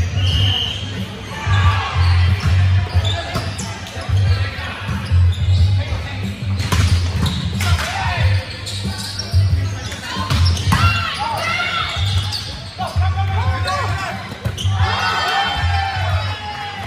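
Indoor volleyball rally: the ball being struck and players shouting calls on court, over background music with a steady thumping bass beat.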